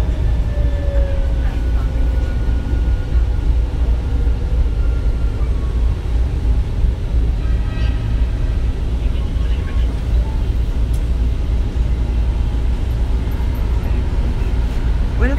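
Manila MRT Line 3 train heard from inside a car: a steady low rumble with a whine that falls in pitch over the first few seconds as the train slows into a station.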